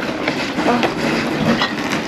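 Footsteps crunching on packed snow, with irregular small clicks and knocks mixed in.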